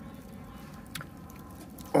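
Wood fire in a metal fire pit crackling quietly, with one sharper pop about a second in.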